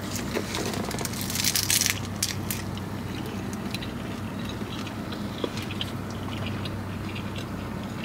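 Biting into a seaweed-wrapped rice ball: the crisp seaweed crunches loudly for the first two seconds or so, then gives way to quieter closed-mouth chewing with occasional small clicks.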